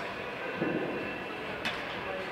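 Loaded barbell lowered from a deadlift lockout and set down on a lifting platform: a dull thud from the weight plates about half a second in, then a short sharp clank near the end, over a steady background noise.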